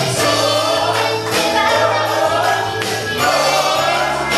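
Girls singing an upbeat idol pop song live into handheld microphones over loud backing music.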